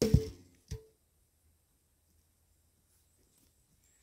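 A hand saw tossed onto the ground lands with a knock and a short metallic ring from its blade, then a second, smaller knock with the same ring under a second later.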